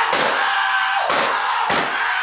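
Three heavy hit sound effects in quick succession: one at the start, one about a second in and one near the end. Each is a sudden crash that sweeps down in pitch, over a continuous rushing noise.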